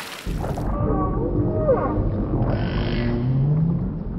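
Whale calls starting about a quarter second in: gliding moans and squeals over a deep underwater rumble, with a low call rising in pitch near the end.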